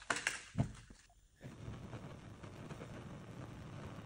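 A few handling clicks, then about a second and a half in a Bunsen-type gas burner catches and its flame runs with a steady hiss.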